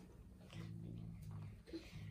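A faint, steady low hum during a pause in the speaking.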